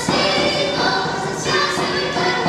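Children's choir with women's voices singing a song in held, sustained notes, with a hand drum marking the beat.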